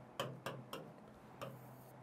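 Pen tip tapping on the screen of a digital whiteboard: four short, light taps, three in quick succession and one more about a second in, as a pen colour is picked from the on-screen palette.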